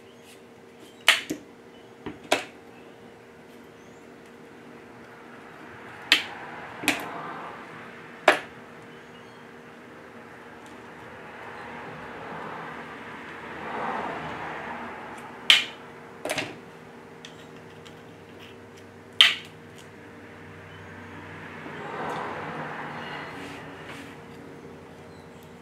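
Tile nippers snapping bits off porcelain tile: about ten sharp cracks, some in quick pairs, scattered through the stretch. Softer rustling of tile pieces being handled on a towel comes in between.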